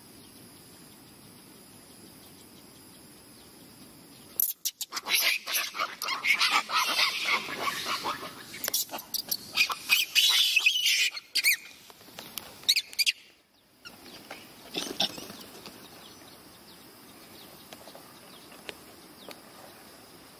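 Macaque monkeys screaming in a squabble, loud jagged cries starting about four seconds in and lasting around nine seconds, then a brief second outburst.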